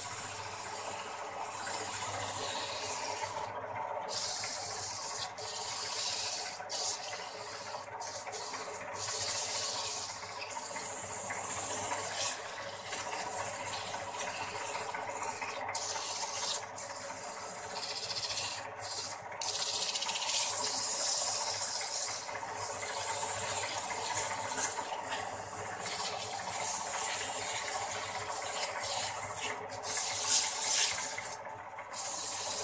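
Motor-driven wood lathe running with a steady hum while a hand-held tool rubs against the spinning wooden spindle, a hiss that breaks off briefly many times as the tool is lifted.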